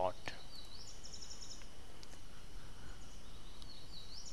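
Steady background hiss in a pause between sentences, with a short faint trill of rapid high-pitched chirps about a second in.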